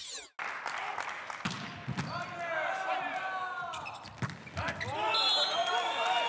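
A volleyball being struck again and again in a rally: sharp slaps of hands and arms on the ball, mixed with players' shouts.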